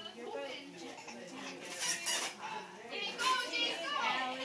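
Indistinct voices and children's chatter, high and bird-like in places, with two brief noisy rushes about two and three seconds in.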